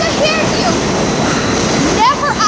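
New York City Subway G train car moving through a station, a steady loud rumble and rush of wheels on the rails.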